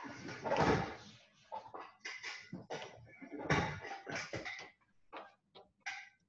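Irregular knocks and rustles, with two louder bursts about half a second and three and a half seconds in.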